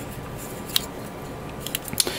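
Plastic model kit parts being handled and pressed together, with a few light plastic clicks: a part that will not seat all the way in.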